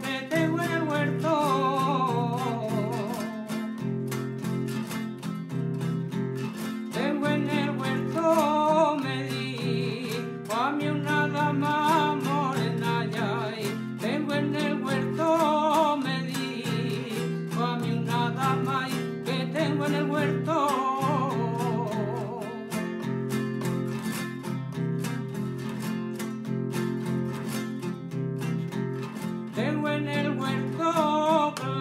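Acoustic guitar played in the old strummed and struck (rasgueado and golpeado) style of the toque for the seguidillas alpargateras, with a man singing the seguidilla over it in phrases separated by short breaks.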